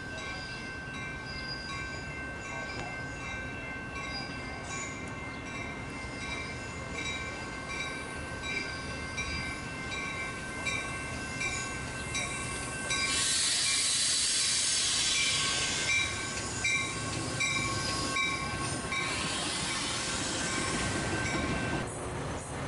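Metra push-pull commuter train arriving at a station cab car first, its rumble building as it draws in, while grade-crossing bells ring steadily at about two strikes a second. About 13 seconds in there is a loud hiss lasting about three seconds, with a weaker one near the end.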